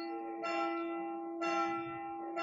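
A bell struck about once a second, two strokes in all, each ringing on over a steady hum tone. It is heard through a video-call microphone.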